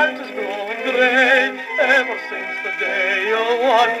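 Instrumental interlude of violin, cello and piano from a 78 rpm shellac record playing on an HMV 102 wind-up gramophone, with a wavering melody line. The sound is thin, with no deep bass.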